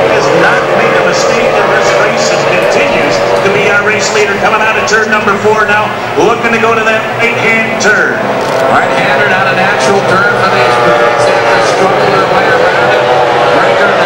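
High-revving racing outboard engines of several Formula 1 tunnel-hull powerboats, their pitch rising and falling as the boats race through the turns, with one engine's pitch sweeping up about six seconds in.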